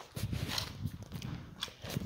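Irregular low rumbling and scuffing of a phone being handled and carried, with footsteps on brick paving.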